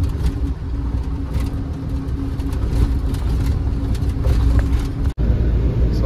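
BharatBenz truck's diesel engine and road noise heard inside the cab while cruising: a steady low drone with a constant hum and a few light rattles. The sound drops out for an instant about five seconds in, then carries on.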